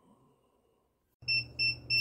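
Near silence, then about a second in a heat press timer starts beeping, about five short high-pitched beeps a second, signalling that the press time is up.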